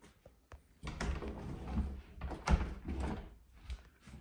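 A hinged door being pushed shut and fumbled with at its metal hasp latch: a series of knocks, clicks and rattles, the loudest knock about two and a half seconds in.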